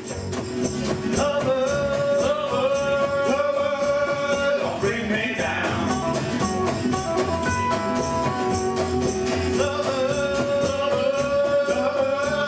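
Live acoustic Americana band playing, with a strummed acoustic guitar and a plucked upright double bass under a melody of long held notes.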